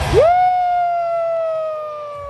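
A single spectator close to the phone lets out one long, high 'Wooo!'. It swoops up and then falls slowly in pitch. This is the Ric Flair-style woo cheer for Charlotte Flair, and it comes just as the arena music cuts off.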